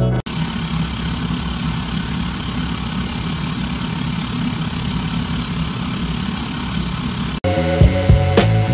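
Steady low rumble of an idling vehicle engine, cut in abruptly about a quarter second in and cut off just before the end, with the music around it.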